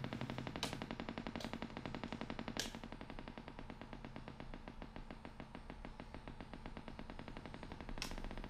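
Elektor Formant modular synthesizer oscillator running at a very low pitch through the monitor speakers, a rapid even ticking buzz of roughly ten pulses a second that drops in level about three seconds in. A few sharper clicks of patch cables being plugged into the jacks come in the first three seconds.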